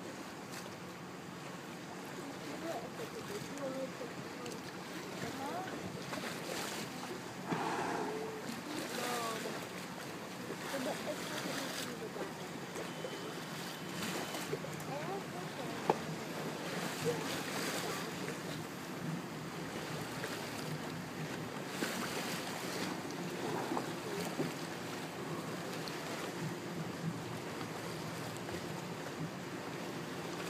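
A boat under way at sea: a steady low engine hum with water washing and wind buffeting the microphone in gusts, and faint indistinct voices of passengers.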